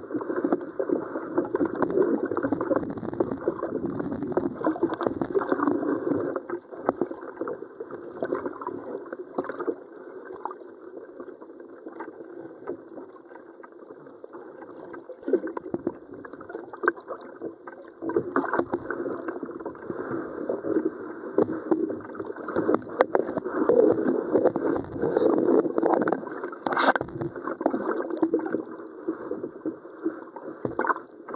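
Muffled rushing of river water picked up by a camera held underwater, peppered with many small clicks and pops. It is louder in the first few seconds and again through the second half, quieter in between.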